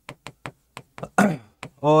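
A stylus tapping and clicking on an interactive display screen as words are handwritten on it: a quick, uneven series of sharp taps.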